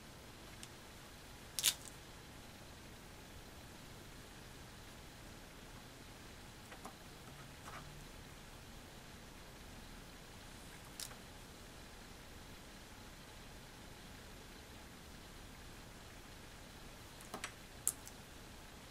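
Quiet room hiss with a few faint, sharp clicks from small handling of polymer clay pieces and tools on a plastic-covered craft table. The loudest click is about two seconds in, and a quick cluster of clicks comes near the end.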